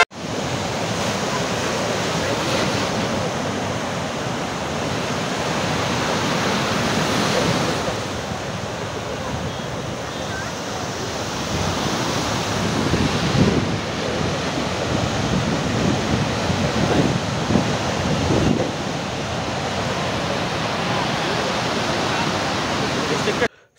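Rough surf: waves breaking and washing up a sandy beach in a continuous rush, with stronger surges about two-thirds of the way through.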